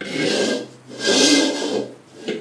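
Large aluminium wok being scraped as a toddler handles it on a tile floor: two rasping scrapes, the second longer, with a faint metallic ring.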